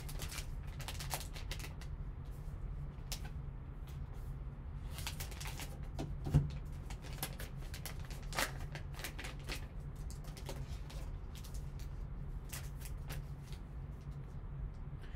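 Plastic packaging crinkling and rustling in irregular short crackles as gloved hands unwrap a sealed vault pack and handle a card in a hard plastic case, with a steady low hum underneath.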